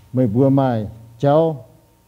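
A man speaking in Mien, two short phrases with a brief pause between them.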